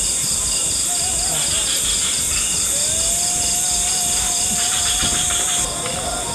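Night insect chorus: crickets chirping in a regular pulse, about five or six chirps a second, over a steady high-pitched drone, with a buzzier insect trill breaking in twice. A thin wavering tone joins from about halfway.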